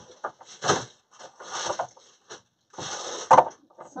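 Craft materials being handled and set down, in a few short rustling bursts, with a sharp tap or click a little over three seconds in.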